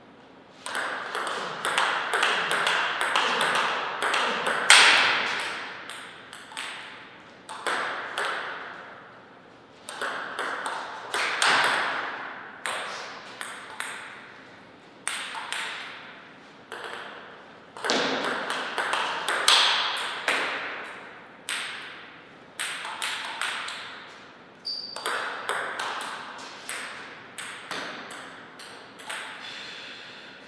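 Table tennis rallies: the ball clicks off the bats and the table in quick back-and-forth strokes. Several points are played with short pauses between them, and the sharpest hit comes a little before the fifth second.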